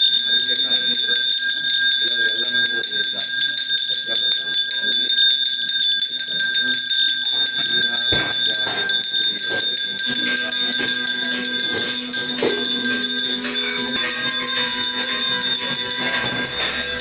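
Brass puja hand bell rung without pause, its clapper striking rapidly so that its ringing tones hold steady, over music.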